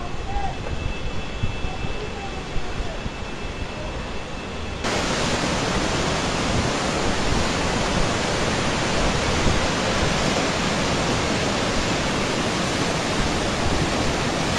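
Tsunami floodwater rushing, a steady loud rush of water. About five seconds in it jumps suddenly louder and hissier.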